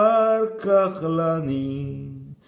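A man singing a Maltese song in long held notes, stepping down to a lower, longer note about halfway through.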